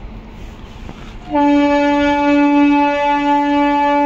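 Train horn sounding one long, steady, loud note, starting about a second in and held to the end.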